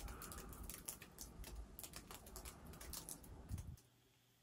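Faint footsteps crunching on a snow-covered wooden deck, heard as irregular small clicks and crunches with one louder knock, then the sound cuts off abruptly near the end.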